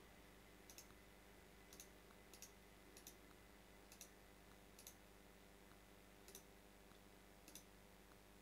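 About eight sharp, irregularly spaced clicks of a computer mouse, several in quick pairs, over near-silent room tone.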